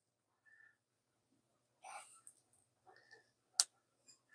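A charging-cable plug clicking into a phone's charging port once, near the end, after a few faint handling rustles.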